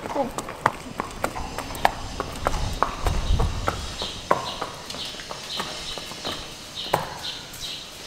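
Appaloosa horse's hooves clip-clopping on brick paving at a walk, an irregular string of sharp hoof strikes as it is led along.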